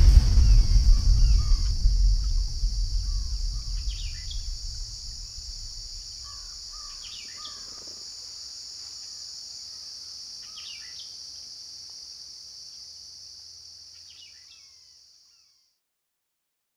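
A deep low rumble dies away over the first few seconds. Under it runs a steady high-pitched drone like insects, with a few short bird-like chirps every few seconds. Everything fades out near the end.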